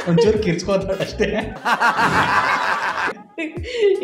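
A man and a woman laughing, with one long burst of laughter that breaks off about three seconds in.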